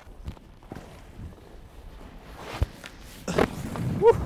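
Snow crunching and scraping close to the microphone, with scattered soft thumps and a brief louder scrape about three seconds in.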